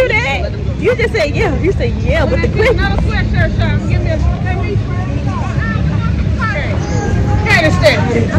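People talking and chattering over a steady low outdoor rumble, with the voices loudest in the first few seconds and again near the end.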